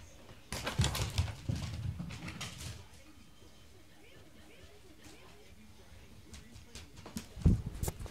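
A dog's paws scrabbling and thumping on the floor as it dashes after a thrown tennis ball: a burst of irregular knocks and scuffles lasting about two seconds, then faint sounds, and a single low thump near the end.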